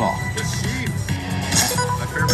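Bonus-round music and electronic chimes from a Casino Royale-themed slot machine as a card is revealed in its pick-a-card feature, over a steady background din.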